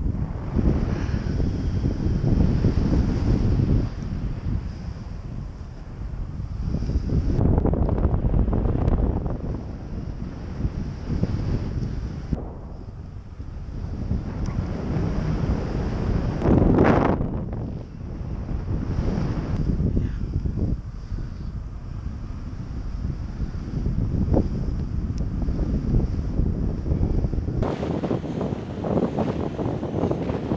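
Wind buffeting the microphone of a camera carried on a paraglider in flight, swelling and fading in gusts every few seconds, loudest about seventeen seconds in. Near the end a higher hiss joins in.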